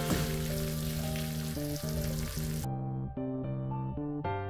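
Chilli chicken sizzling in a wok under background music with held notes. The sizzling cuts off suddenly a little past halfway, leaving only the music.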